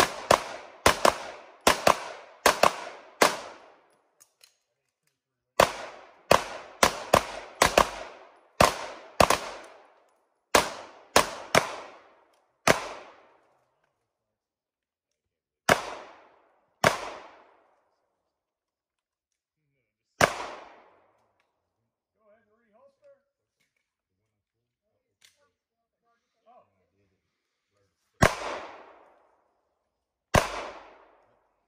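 Handgun shots from several shooters firing at once: fast, overlapping strings of shots, a short pause about four seconds in, another fast string, then single shots coming further and further apart, the last few seconds apart near the end.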